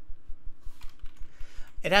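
Typing on a computer keyboard: a run of light, quick key clicks.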